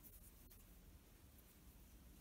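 Near silence: room tone with faint rustling as the crocheted yarn and hook are handled.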